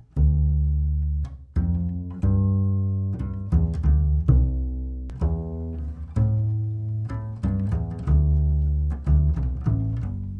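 Double bass played pizzicato: a line of plucked low notes, about two a second, each with a sharp attack that dies away. It is heard through budget Chinese condenser microphones, an MC100 and then a BM800, as a test of how cheap mics record the instrument.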